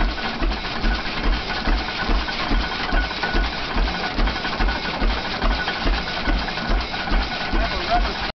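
Ore stamp mill running: the cam-lifted stamps drop in a steady rhythm of heavy thuds, a little over two a second, with a continuous metallic clatter over them.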